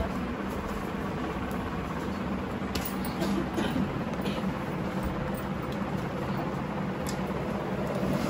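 Steady low hum and room noise, with a few faint clicks.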